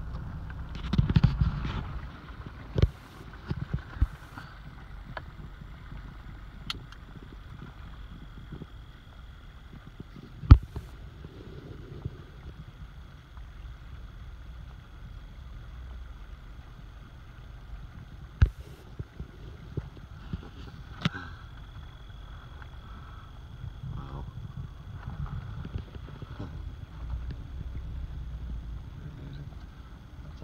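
Low, steady rumble of a stopped car, heard from inside the cabin, broken by a few sharp clicks and knocks.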